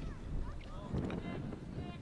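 Field-side ambience: wind rumbling on the microphone, with faint voices calling out a few times.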